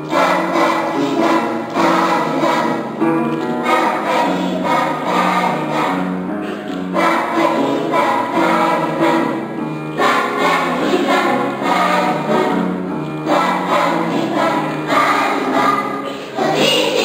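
Young children's choir singing together, in continuous phrases with brief breaths between them.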